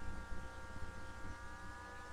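Steady low hum with a faint whine of several thin tones held together, drifting slowly up in pitch.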